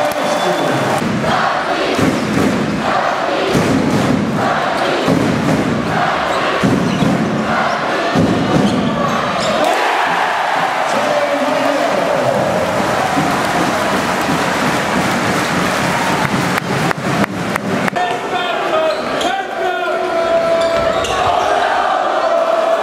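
Crowd noise in a packed basketball arena, with rhythmic chanting through the first half and the ball bouncing on the hardwood court during play.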